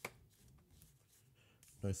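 Yu-Gi-Oh trading cards handled by hand: a sharp click at the start, then faint rustling and tapping of cards as they are sorted and laid down.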